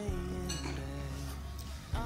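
Background music with sustained notes, with a light clink of tableware about half a second in.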